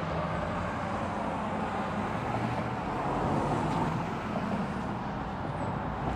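Steady background vehicle and traffic noise: a low engine hum under an even rushing hiss.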